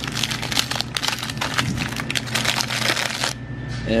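Plastic wrapper of a Twizzlers licorice package crinkling as it is handled and turned over in the hand, stopping a little after three seconds in.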